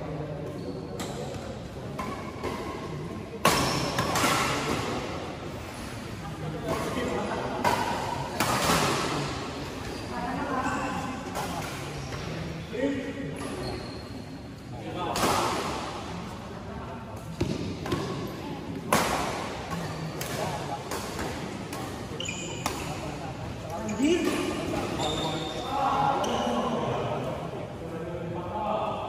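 Badminton racket strikes on a shuttlecock during a doubles rally: sharp hits a few seconds apart, echoing in a large hall.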